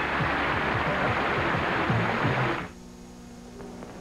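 Studio audience applause that cuts off suddenly about two and a half seconds in, leaving a faint steady hum.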